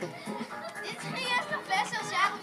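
Children laughing and calling out in high-pitched voices, loudest in the second half, over background music.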